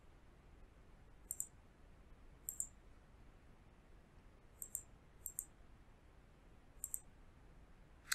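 Computer mouse button clicked five times at uneven intervals, each click a quick pair of sharp ticks from press and release, over a faint quiet background.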